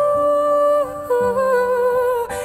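A woman singing a wordless "ooh-ooh", holding one note and then stepping down to a lower, wavering note about a second in, over steady low accompaniment notes.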